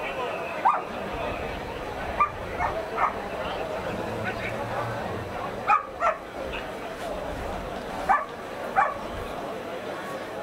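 A dog giving short, sharp yelps and barks, about eight in all, several in quick pairs, over a steady murmur of voices.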